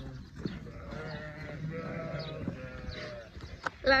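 Sheep bleating: one long, drawn-out bleat that starts about a second in and lasts about two seconds.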